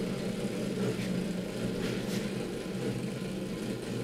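Small electric motor inside a steampunk metal fish sculpture running with a steady low hum as it slowly turns the fish on its stand.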